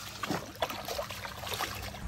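Hooked peacock bass thrashing at the water's surface, a run of irregular splashes.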